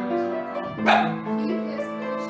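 Upright piano being played, notes sounding one after another, with a single loud dog bark about a second in.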